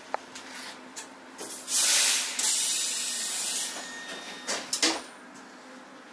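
Roslagsbanan commuter train doors closing: a loud hiss of air about two seconds in that lasts about two seconds and fades, then a few sharp knocks near the five-second mark as the doors shut.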